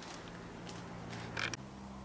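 Faint creaks and soft clicks of handling noise over a low steady room hum, the clearest click about one and a half seconds in.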